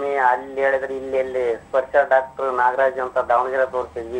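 Speech only: a person talking continuously in conversation.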